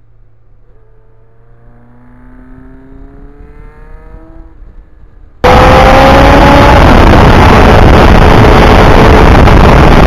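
Motorcycle engine, faint at first, rising in pitch as the bike accelerates. About five seconds in the sound jumps abruptly to a loud rush of wind on the microphone, with the Kawasaki Ninja's engine running at speed under it.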